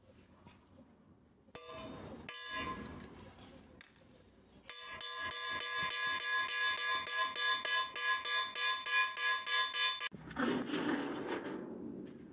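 Hand hammer striking a small flat steel piece on a steel rail anvil, about four blows a second. The metal rings steadily between the blows. It starts about five seconds in and stops suddenly after about five seconds.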